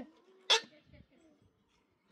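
A single sharp blow of a hand tool on the end of a log fence post, about half a second in.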